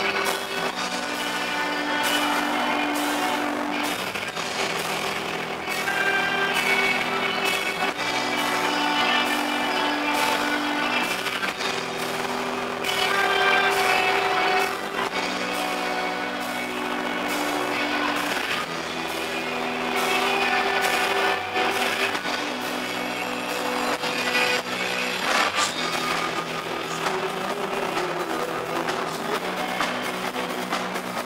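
Live rock band playing: electric guitars repeat a chord pattern over drums and cymbals.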